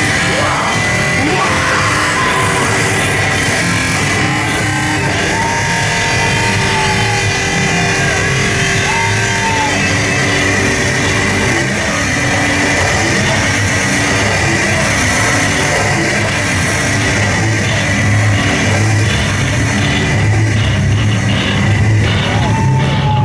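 Live heavy band playing loud, distorted music with guitars and drums in a club, heard from the crowd. A sustained high tone rings through the noise, with short pitch-bending lines over it.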